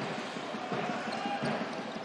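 A basketball bouncing a few times on a hardwood court as a player dribbles in the post, under the steady murmur of an arena crowd.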